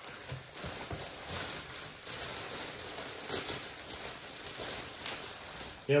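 Clear plastic bag rustling and crinkling as hands handle it and work it open, an irregular crackle that rises and falls.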